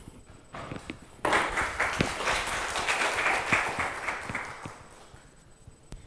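Audience applause that starts suddenly about a second in and dies away before the end.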